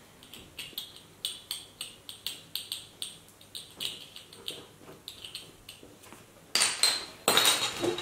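Dry-erase marker squeaking and tapping on a whiteboard in a quick run of short strokes as a word is written, followed near the end by a couple of louder handling sounds.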